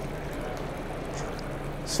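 Steady background noise with a faint low hum and no distinct event.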